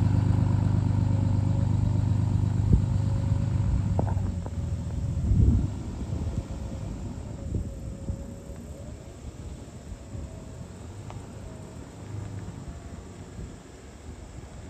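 2005 Dodge Ram's 5.9L Cummins inline-six turbodiesel running as the truck pulls slowly away. Its low, steady rumble is strongest at first, swells briefly about five seconds in, then fades as the truck moves off.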